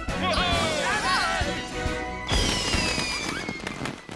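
Cartoon sound effects over background music: warbling, bending chirps, then about halfway through a sudden burst followed by a long falling whistle as a shower of sparkles goes off.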